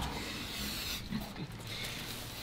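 A handheld cutter slicing through stabilized 3K carbon fiber fabric gives a faint rasp that fades out about a second in.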